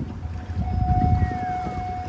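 Low rumble of a boat on open water, swelling about a second in, with a steady high tone from about half a second in and a short falling whistle partway through.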